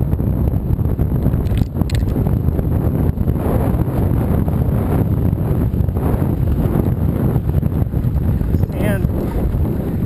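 Wind buffeting the camera microphone on a mountain bike ridden fast along a dirt singletrack, with a steady low rumble from the ride. A brief wavering high squeal comes just before the end.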